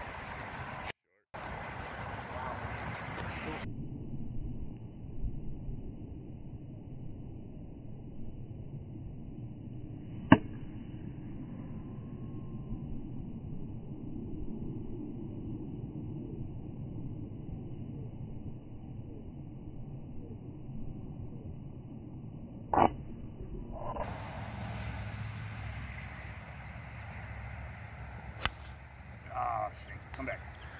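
Golf club striking a ball off the tee: one sharp click about ten seconds in, over steady low outdoor noise heard muffled and dulled. A second sharp knock comes near the twenty-three-second mark.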